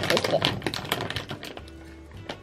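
Crinkling and crackling of a plastic candy bag as fingers dig into it, a rapid run of small crackles that thins out after about a second and a half.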